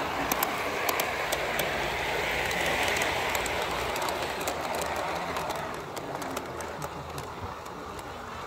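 Large-scale garden model train running past, with wheels clicking irregularly over the rail joints and a rolling rumble. It is loudest about two to three seconds in and fades as the train draws away.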